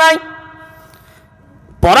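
A man's drawn-out sung note over a public-address loudspeaker ends just after the start; the same steady tone lingers and fades for over a second, and his speech starts again near the end.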